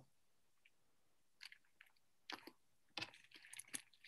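Near silence over a video-call line, with a few faint short clicks and crackles in the second half.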